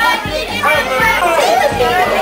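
Many children talking and calling out at once, with music playing underneath.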